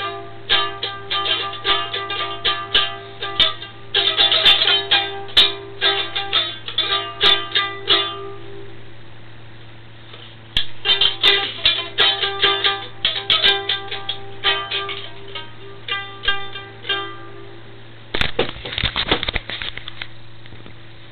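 Bontempi toy acoustic guitar played by plucking single notes in quick runs. The runs pause for a couple of seconds partway through, then resume, all over a steady low hum. A short rough burst of noise comes near the end.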